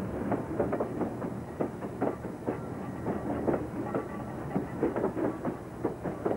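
Freight cars rolling past close by, with a steady rumble and irregular clicking and knocking of steel wheels on the rails, several knocks a second.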